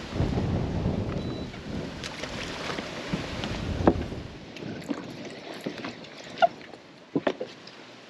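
Wind buffeting the microphone, a dense rumble that drops away about four and a half seconds in. After that it is quieter, with a few sharp clicks and knocks.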